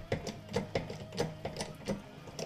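Homemade apple press being pumped up with a jack: a string of small, irregular clicks and ticks, a few a second, from the jack and press as they take the pressure.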